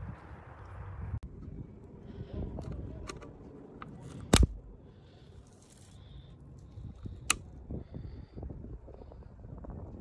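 Pliers working at a video doorbell's wiring and mounting bracket: handling noise with a few sharp metallic clicks and snaps, the loudest about four seconds in and another about seven seconds in.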